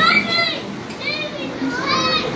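A young child's high-pitched squeals, three short ones, each arching up and down in pitch, over a low murmur of background voices.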